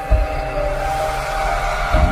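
Intro music: held synth chord notes over a deep bass, with a heavy low hit just after the start and another near the end.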